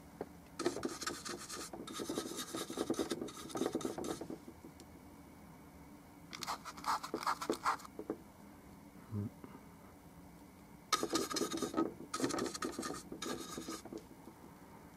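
A paintbrush scrubbing paint on in short, quick, rasping strokes, in three spells with pauses between.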